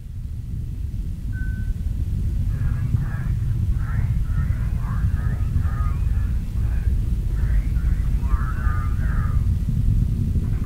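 Deep, steady rumble of the Falcon 9's nine first-stage engines during ascent, growing a little louder in the first seconds. Faint, thin-sounding radio voice chatter runs underneath through the middle, and a short beep comes about a second and a half in.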